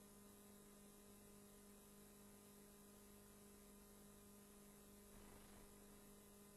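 Near silence with a faint, steady electrical hum.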